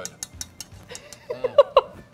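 A metal fork clicking against a ceramic bowl a few times. Near the end there are short vocal sounds, like the start of a laugh.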